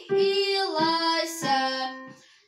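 A girl singing while accompanying herself on a digital piano. Her held notes step down in pitch over light, evenly spaced keyboard notes, and the phrase fades out near the end.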